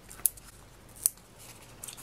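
Quiet paper handling as foam adhesive dimensionals are peeled from their sheet and pressed onto the back of a black cardstock layer, with two short crisp clicks, one just after the start and one about a second in.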